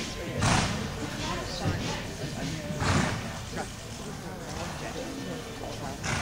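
People talking indistinctly, with two short breathy bursts of noise about half a second and three seconds in.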